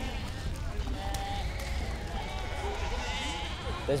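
A flock of Icelandic sheep bleating, many calls overlapping, over a steady low rumble.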